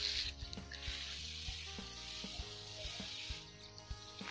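Hand-pump pressure sprayer misting liquid: a steady hiss of spray that breaks off briefly early on and stops shortly before the end, with faint background music underneath.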